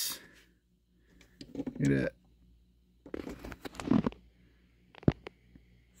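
A Hot Wheels diecast toy car being picked up by hand: a stretch of rustling handling noise, then a few sharp clicks about five seconds in. A brief murmured voice comes about two seconds in.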